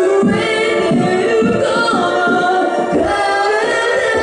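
Female vocalist singing live into a microphone over band music, holding long notes that bend in pitch, with low drum hits beneath.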